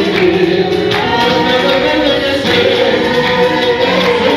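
Congregation singing a gospel worship song together, many voices holding long notes, with hands clapping along.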